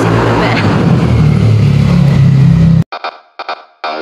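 Edited intro sound: a loud, steady low drone that cuts off abruptly about three seconds in, followed by a few short tonal blips.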